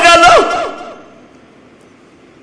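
The end of a man's drawn-out, chanted sermon phrase through a microphone, fading out within the first second, followed by a pause with only faint background.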